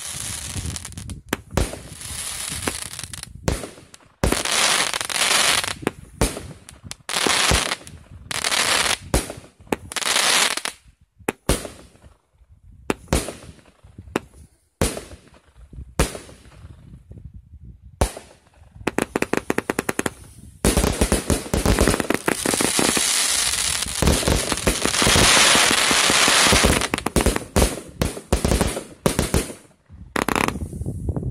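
A 110-shot, 25 mm-calibre fireworks cake firing: a string of sharp shots and crackling bursts. It thins out with short near-quiet lulls past the middle, then turns into a dense, almost continuous volley of shots and crackle over the last third.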